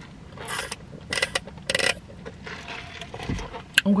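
Three short, noisy slurps through a straw from a paper fountain-drink cup, followed by a low thump and a sharp click near the end.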